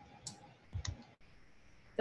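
A few soft computer clicks over the faint room tone of a video-call microphone: one about a quarter second in and two close together near the middle.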